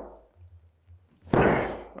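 A single padded thud as a woman brings a bat down onto a cushioned table, a little past halfway, together with a forced breathy grunt as she strikes.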